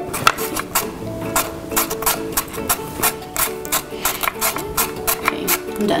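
Background music with held tones, over a run of short rasping strokes, about three a second, of vegetables being pushed across a mandolin slicer's blade.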